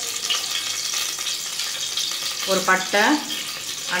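Hot oil sizzling steadily in an aluminium pressure cooker on the stove, with a short spoken phrase about two and a half seconds in.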